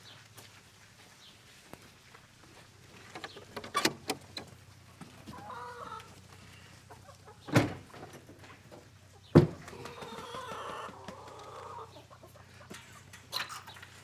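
Chickens clucking inside a barn as its wooden door is opened, with a rattle of the door about four seconds in and two loud knocks from the door a couple of seconds apart midway.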